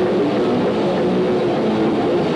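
Live heavy rock band: distorted electric guitar and bass playing sustained chords in a loud, dense wall of sound, the notes changing every half second or so.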